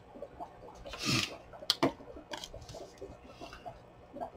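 Paper rustling and rubbing as small torn pieces of paper are handled and pressed down by hand onto a paper library pocket, with a louder rustle about a second in and a couple of sharp small clicks just after.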